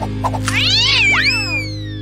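A cat's drawn-out yowling meow, several pitches rising and falling together, starting about half a second in and fading toward the end, over steady background music.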